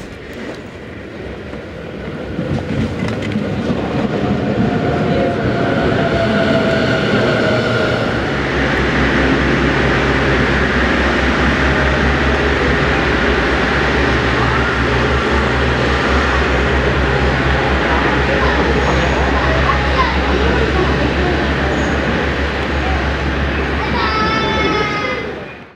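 Diesel railcar engine pulling away, a KiHa 110-series unit on the Hachiko Line. Its pitch rises over the first few seconds, then it settles into a loud, steady low throb from about eight seconds in.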